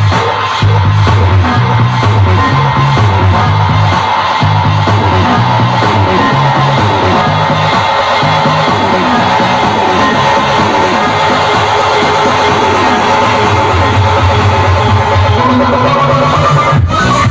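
Electronic dance music mixed live by a DJ on CDJ players and a DJ mixer, played loud over a sound system, with a repeating, pulsing bass line.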